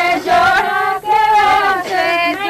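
Background song: a high female voice singing a Hindi-Urdu song, with held, wavering notes over light music.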